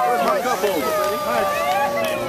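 A team of excited sled dogs yelping and howling together: many short, overlapping cries with a few long held howls.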